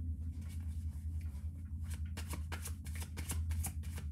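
A tarot deck handled and shuffled by hand: a run of quick papery card flicks and snaps that come thicker and faster in the second half. A steady low hum runs underneath.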